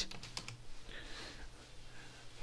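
A few faint keystrokes on a computer keyboard, clustered in the first half second.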